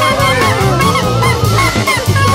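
Instrumental jazz: a saxophone playing a quick run of short, swooping bent notes over bass and drums.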